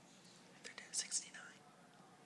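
A person whispering briefly about a second in, with two sharp hissing 's'-like sounds close together, over faint room noise.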